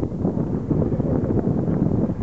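Wind buffeting the microphone: a rough, uneven rumble strongest in the low end.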